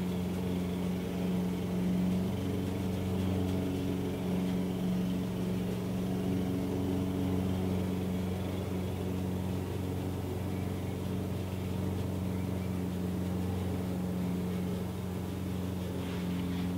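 A steady low hum with a single held pitch, unchanging throughout, as of a motor or appliance running in the room.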